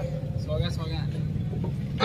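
A pause in a man's amplified speech, filled by a low steady hum with faint voices in the background, clearest about half a second to a second in.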